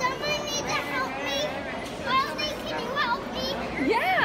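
A small child's high-pitched voice, talking and babbling in short phrases without clear words.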